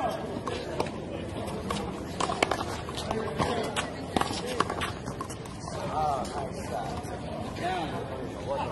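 A rubber handball rally: a string of sharp smacks as the ball is struck by gloved hands and hits the concrete wall and court, the loudest about two and a half seconds in.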